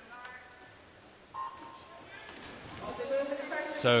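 Electronic race-start signal at a swimming pool: a short, steady beep sounds suddenly about a second in as the swimmers leave the blocks. A swelling wash of noise follows as they enter the water.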